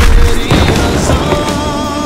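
Film sound effects of a missile launch and an explosion: a loud rushing burst with deep rumble, a second hit about half a second in, then held tones of a dramatic music score.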